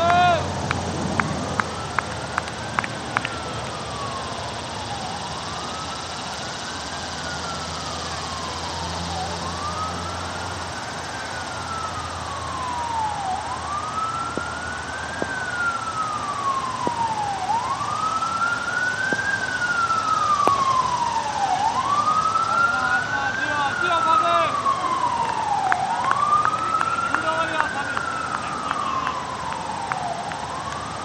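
Emergency vehicle siren wailing off in the distance, a slow rise and fall about every four seconds, growing louder in the second half. It opens with a sharp knock and a few quick clicks.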